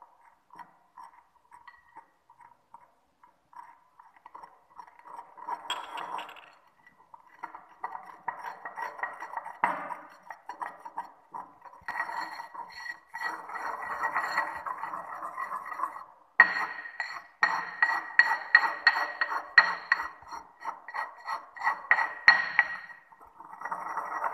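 Porcelain pestle grinding and scraping a wet toothpaste mix of powders, water and glycerin around a porcelain mortar, triturating it into a smooth paste. The strokes are light and sparse at first, then come quick and continuous from about six seconds in, louder in the second half.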